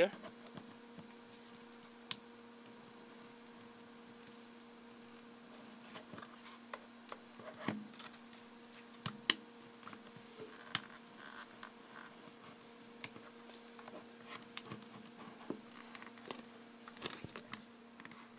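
Scattered plastic clicks and knocks as a TomTom GPS unit is handled and pressed into its mount, over a steady faint electrical hum.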